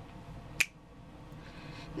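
A single finger snap a little over half a second in, one of a series of snaps keeping the beat for unaccompanied singing, over quiet room tone.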